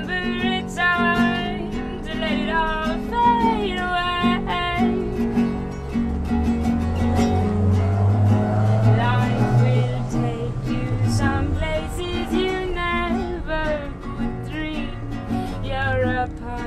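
A woman singing live over her own strummed acoustic guitar, with a low hum under the music for a few seconds around the middle.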